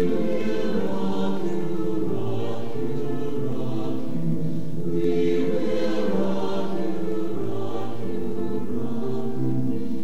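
Mixed chamber choir singing held chords in several parts.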